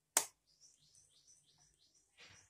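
A sharp click just after the start, then a small bird chirping: a quick run of short, high notes, each falling in pitch, about four a second.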